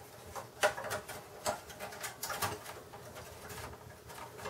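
A handful of faint clicks and scrapes as sheet-metal expansion-slot blank plates are slid back into the rear slot openings of a Dell Optiplex GX270 case.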